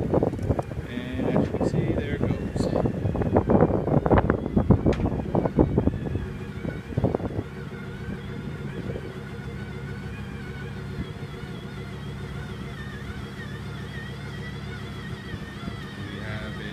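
Electric drive motor of a Bed Locker retractable truck-bed cover running steadily with a hum and a wavering whine as the cover retracts open. Over the first six seconds or so a louder, irregular rough noise lies on top.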